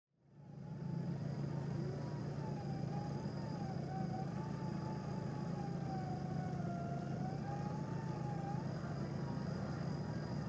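A WARN 8274 single-motor electric winch whining under heavy load as it slowly drags a truck up a steep bank, over the steady low hum of the truck's engine. The whine wavers a little in pitch as the load shifts.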